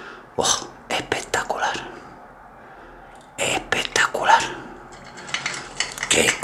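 Red cocktail being strained from a metal shaker into a glass of ice, a faint steady trickle, under two short bursts of soft, whispered speech.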